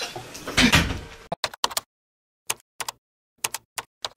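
A short knock in the room in the first second. Then, after a cut to dead silence, about ten short sharp clicks, in small clusters over the next two and a half seconds.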